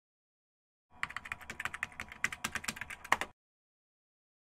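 Rapid keyboard-typing clicks, about eight a second, starting about a second in and stopping abruptly after about two and a half seconds.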